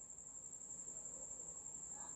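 A faint, steady high-pitched whine on one unbroken note, over low background hiss.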